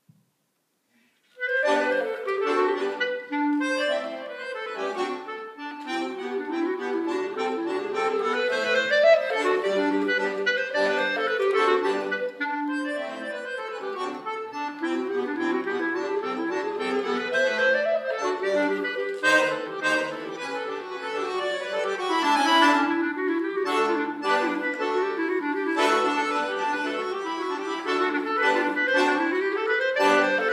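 Clarinet and piano-accordion duo playing a piece together. The music starts suddenly about a second and a half in.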